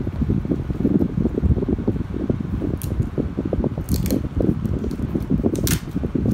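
Steady low rumble of a fan, with three short crisp sounds about three, four and nearly six seconds in.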